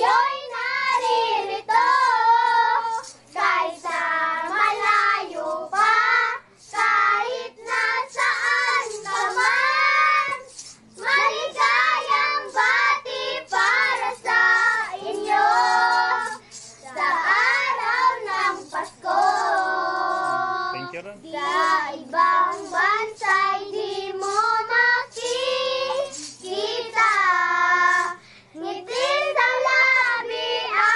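Several children singing a Christmas carol together.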